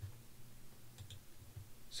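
Quiet room tone with a low hum and a couple of faint, small clicks about a second in.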